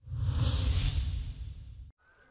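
Whoosh sound effect for a news channel's graphic transition: a hissy swish over a deep rumble. It swells within the first half second, fades away, and cuts off just before the end.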